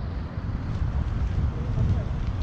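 Wind buffeting the microphone: an uneven low rumble that swells and drops in gusts.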